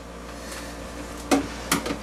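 Steady low background hum with faint level tones, broken by two or three short, sharp sounds about a second and a half in.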